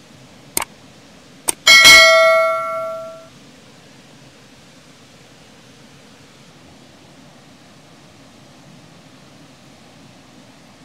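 Subscribe-button sound effect: two mouse clicks about a second apart, then a bright notification bell ding that rings and fades away over about a second and a half.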